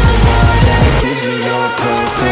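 Electronic workout music with no vocals: fast, deep kick-drum hits, about four or five a second. About a second in, the bass drops out, leaving a thinner break.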